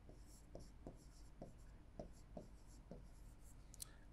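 Faint taps and strokes of a stylus on the glass of an interactive display as a word is written, a soft tick every half second or so.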